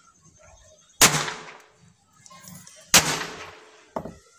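Two sharp bangs about two seconds apart, each dying away over half a second: a hammer striking small homemade hammer-bomb firecrackers on a concrete floor and setting them off.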